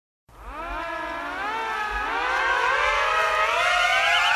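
Siren sound effect opening a novelty song: several overlapping wails wind up together, their wavering pitches climbing and growing louder, starting a moment after silence.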